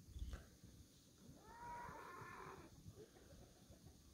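A horse whinnying faintly and at a distance, one wavering call of about a second and a half starting just over a second in; a soft knock comes near the start.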